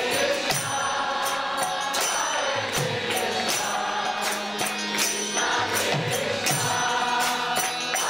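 Kirtan: devotional mantra chanting by a group, sung to music with hand cymbals striking a steady beat and a drum underneath.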